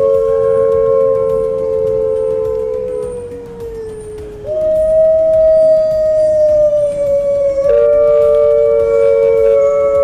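Wolves howling: long, slowly falling howls, two voices overlapping. After a brief lull, a new, higher howl starts about four and a half seconds in, and another voice joins near eight seconds.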